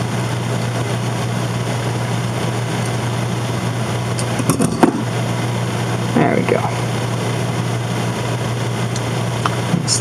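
A steady low hum, with a few light clicks from small metal parts (a soldering tip and a needle file) being handled about halfway through.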